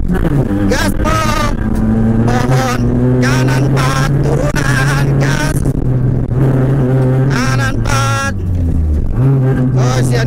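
Rally car engine heard from inside the cabin, pulling hard at steady high revs on a gravel stage. The engine note drops briefly near the end, as on a lift or gear change, then picks up again, with tyre and gravel noise underneath.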